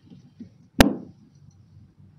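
A single sharp knock a little under a second in, from a whiteboard eraser striking the board as it is brought up to wipe it, with a short ring after it. Faint room tone otherwise.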